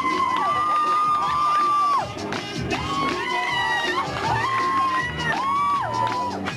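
Loud party dance music with long, sliding held vocal notes, over a crowd of dancers cheering and shouting.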